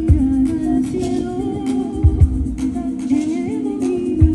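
Live band music: a held chord with a wordless vocal melody wavering over it, and a few low drum beats.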